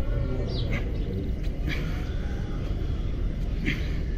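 Birds chirping briefly four times, short high calls, over a steady low rumble.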